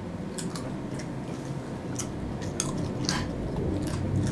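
A dog chewing a kettle-cooked potato chip: irregular sharp crunches, about half a dozen, over a soft low rumble.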